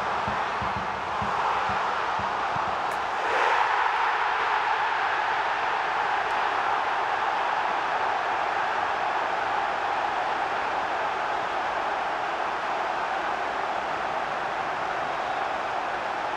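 Large football stadium crowd cheering a goal: the cheer swells suddenly about three seconds in and stays loud and steady.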